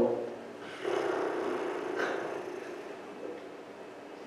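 A person's voice making a drawn-out sound without words. It starts about a second in and fades away over the next two seconds.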